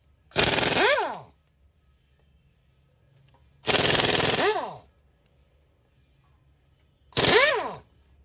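Pneumatic impact wrench hammering off wheel lug nuts in three bursts of about a second each, each ending in a falling whine as the tool spins down.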